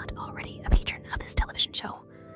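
A whispering voice over a steady droning music bed, with several sharp breathy bursts.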